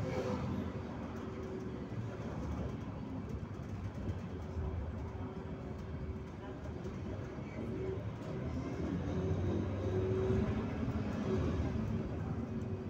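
Steady low rumble of engine and road noise heard from inside a moving vehicle driving through city streets.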